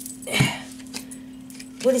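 A brief knock with a light rattle about half a second in, from playing cards being handled on a table by a hand wearing beaded bracelets. A low steady hum runs underneath.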